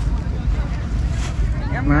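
Wind buffeting the microphone: a continuous low rumble, with a man's voice starting near the end.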